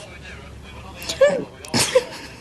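After about a second of quiet, a woman makes a short voiced sound and then a sharp breathy exhale: a brief, stifled laugh.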